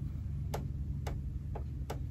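A few light, sharp clicks at uneven intervals from fingernails and fingers handling a stack of pinked-edge fabric squares, over a steady low hum.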